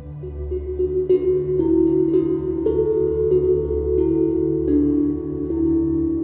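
Ambient new-age background music: slow, sustained tones with soft struck, bell-like notes entering about once a second.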